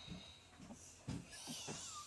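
Faint sounds: a few soft low bumps, then a child's breathy inhale over the last half-second or so.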